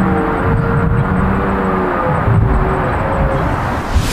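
Red stag roaring in the rut: a long, deep, steady-pitched bellow that fades out about two seconds in, over a steady low background rumble.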